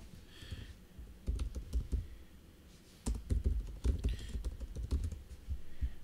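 Typing on a computer keyboard: a short run of key clicks, a brief pause about two seconds in, then a longer run of keystrokes to the end.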